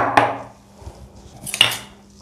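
A glass bowl is set down on a stone countertop with a sharp knock and a second clink just after. A brief, bright kitchen clatter follows about a second and a half in as things are picked up from the counter.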